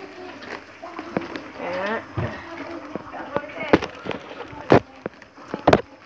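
Three sharp knocks or clicks, the second and third about a second apart near the end, with a voice murmuring briefly before them.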